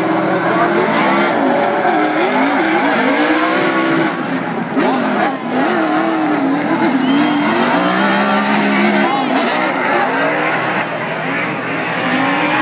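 Two drift cars sliding in tandem, their engines revving up and down with the throttle through the drift over a haze of tyre squeal.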